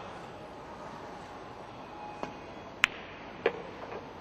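Pool shot: a light tap of the cue tip on the cue ball, then a sharp clack as the cue ball strikes an object ball about half a second later, then another knock and a faint one near the end as the balls reach the pocket or rail. Steady hall noise underneath.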